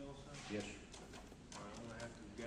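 Faint speech, a man's voice coming and going at low level.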